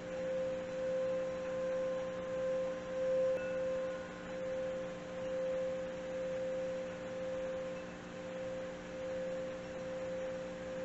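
Handcrafted metal singing bowl being sung by rubbing a plain wooden striker around its rim. It gives one steady ringing tone that swells and fades about once a second as the striker circles.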